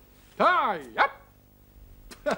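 A man's voice calling out twice, "Ja, ja!": a long cry falling in pitch and then a short sharp one.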